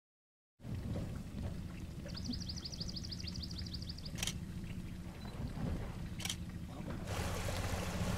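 Boat motor running steadily at a low, even pitch. About two seconds in, a bird sings a fast trill of high notes lasting about two seconds, and two short sharp sounds come later.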